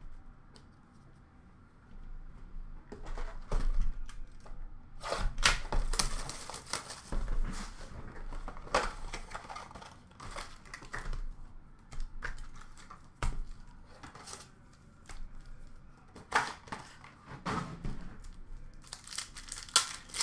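Hockey card packs and a cardboard blaster box being torn open and handled: irregular crinkling and tearing of wrappers with small clicks, starting about two seconds in.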